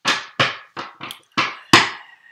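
A deck of tarot cards knocked sharply on a tabletop, six knocks in about two seconds, the last the loudest.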